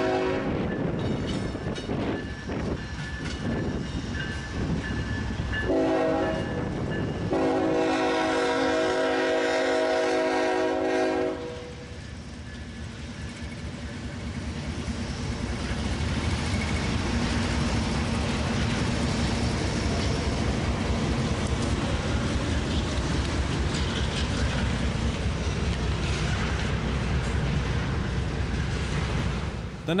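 CSX intermodal train's locomotive horn blowing for a grade crossing: one blast ending about a second in, a short blast around six seconds, then a long blast of about four seconds. The locomotives and cars then roll through the crossing in a steady rumble with wheel clatter, the engine drone growing louder as the locomotive passes.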